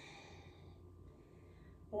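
A faint, soft exhale that trails off in the first moment, then quiet room tone with a low steady hum.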